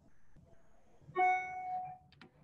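A single pitched note, like a chime or plucked string, starts suddenly just over a second in and holds steady for under a second before stopping.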